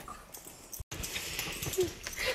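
Quiet handling sounds of a small dog being petted on a wood floor: light taps and rustles, with a brief faint whine from the dog near the end.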